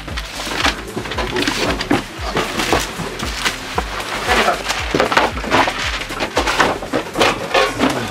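Small wooden and cardboard boxes knocking and rustling as they are handled, in a run of short, sharp clatters, over background music with a steady beat.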